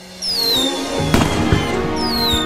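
Fireworks going off: a high whistle falling in pitch, then two sharp bangs a little over a second in, and another falling whistle near the end, over background music.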